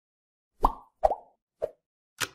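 Three short cartoon-style pop sound effects from an animated logo intro, roughly half a second apart, each a quick plop with a brief pitched ring.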